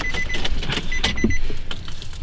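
Inside a car cabin, a steady low rumble from the car running, a few sharp clicks, and a thin electronic warning chime that sounds twice: once at the start, and again about a second in.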